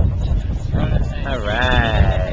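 A person's high, wavering vocal sound like a bleat, starting just under a second in and lasting about a second, its pitch bending up and down.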